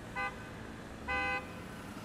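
Car horn honks over a steady hum of city traffic: one short toot, then a slightly longer one about a second in.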